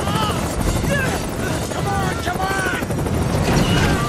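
Helicopter hovering close overhead, its rotor noise and downwash wind making a steady, loud rush. Men's voices shout over it several times.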